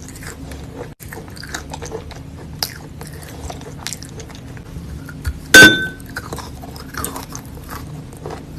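Close-miked chewing of wet chalk: soft crunching and many small mouth clicks, with one much louder sharp crack about five and a half seconds in.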